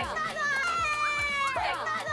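Women's excited high-pitched shrieks of delight: two long held squeals, each dropping in pitch at the end.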